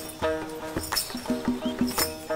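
Background music: a repeating figure of short pitched notes over regular percussive strikes.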